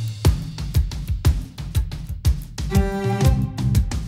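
Instrumental break in an upbeat children's song, with drums and bass keeping a steady beat and no singing. A held chord comes in about three seconds in.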